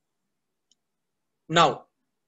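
Near silence for about a second and a half, then a man says "now".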